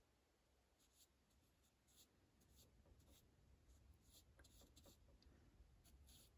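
Near silence, with faint, scratchy strokes of a paintbrush on the wooden birdhouse roof, starting a little before halfway in.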